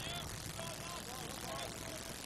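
Faint ballpark crowd ambience: a low, steady background murmur with distant voices calling out.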